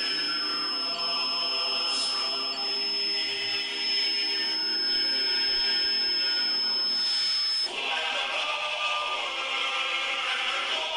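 Choral chant music: several sustained, layered voices holding long notes, changing to a new phrase near eight seconds. A thin, steady high-pitched tone runs under it and cuts off at that change.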